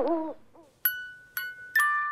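An owl hoot ends in the first moment. Then three bright bell-like notes, glockenspiel-like chimes, are struck about half a second apart, each ringing on.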